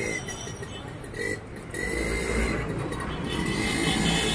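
A motor vehicle engine running nearby, its low rumble swelling about halfway through, with a thin high whine that drops out briefly and comes back.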